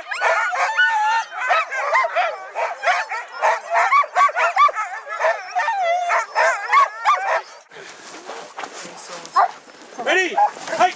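A team of harnessed sled dogs barking and yipping excitedly, many calls overlapping in a continuous chorus, as working dogs do while waiting to be let run. The chorus drops away suddenly near the end, leaving quieter sounds.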